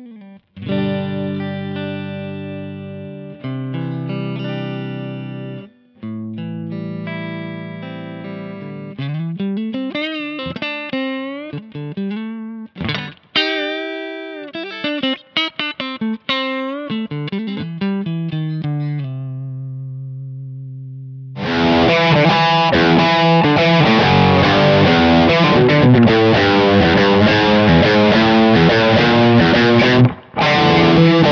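Electric Stratocaster played through a Kemper profile of a 1965 Fender Bassman. It starts with single notes and a lead phrase full of string bends in a fairly clean tone, ending on a held note. About two-thirds of the way through, the sound becomes much thicker and more distorted.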